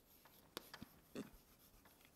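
Chalk writing on a blackboard: a few faint taps and scratches as a word is written.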